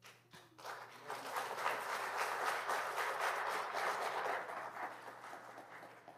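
Congregation applauding: a few scattered claps at first, building about a second in to full, steady applause that fades away near the end.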